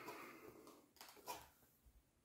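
Near silence, with two faint short clicks about a second in, typical of handling a cardboard box and a small object at a table.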